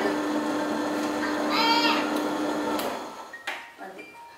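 Elgi Ultra Grind+ table-top wet grinder's motor running with a steady hum, switched off about three seconds in. A child's voice calls out briefly over it in the middle.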